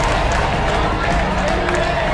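Loud studio-audience crowd noise, many voices shouting and cheering together, over background music.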